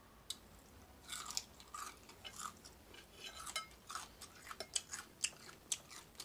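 Close-up eating sounds of crispy bacon being bitten and chewed: a sharp crunch about a third of a second in, then irregular crunching chews that come thicker and faster in the second half.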